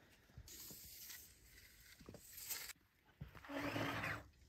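A rough-sawn wooden board sliding and rubbing along a miter saw stand, a faint scraping hiss lasting about two seconds. It is followed near the end by a brief louder sound.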